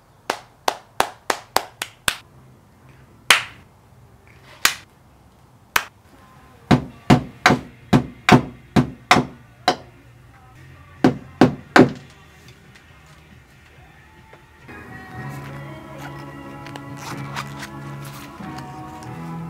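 Hands clapping, a slow clap that speeds up over the first couple of seconds, followed by a few spaced claps. Then a steady series of hammer knocks, about three a second, and three more a little later. Background music comes in near the end.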